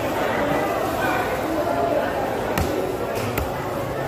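Large knife chopping through fresh tuna onto a wooden chopping block: a few sharp thuds in the second half, over steady background voices.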